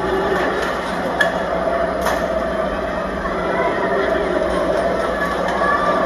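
Machinery of a car-eating robot dinosaur running steadily as its jaws chew a car, with sharp metal snaps about one and two seconds in.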